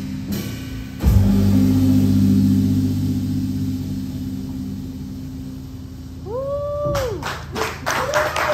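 Live jazz combo ending a tune: an accented band hit about a second in, then a low chord from upright bass, guitar and horns held and slowly fading. Near the end a single rising-and-falling whoop goes up and clapping begins.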